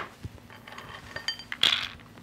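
Whole almonds clinking and rattling as a small measuring cup is scooped into a glass bowl of them: scattered light clicks, then a louder scraping rattle of nuts about one and a half seconds in.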